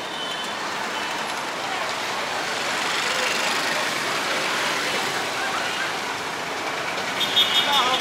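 Busy city street traffic: a steady wash of engine and road noise from passing vehicles.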